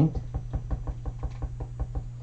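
A blending brush tapped rapidly onto an ink pad to load it with ink: a quick run of soft knocks, about seven a second.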